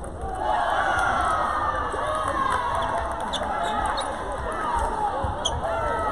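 Busy table tennis hall: many overlapping squeaks from shoes on the wooden gym floor, with a few sharp clicks of celluloid-type ping-pong balls striking paddles and tables, over background voices.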